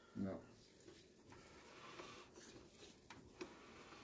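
Near silence: faint background hiss with a few small, soft clicks after a single spoken word.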